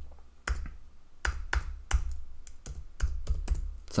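Typing on a computer keyboard: a run of separate key clicks at an uneven pace as a word is typed out letter by letter.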